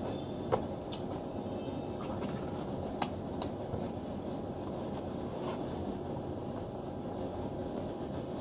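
Fabric of clothing pressed and rubbing against the camera's microphone, giving a steady muffled rumble, with a few light clicks from small plastic toys being handled, one about half a second in and one about three seconds in.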